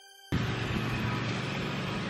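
Soft music fades and cuts off about a third of a second in, replaced abruptly by a loud, steady rush of wind and motion noise on the microphone as the camera travels along a street.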